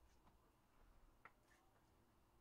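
Near silence, with a few faint soft clicks from a trading card being handled and slid into a plastic sleeve and top loader.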